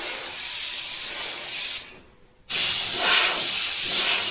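Airbrush spraying, a steady hiss of air and paint that cuts off for about half a second around two seconds in as the trigger is let go, then starts again a little louder.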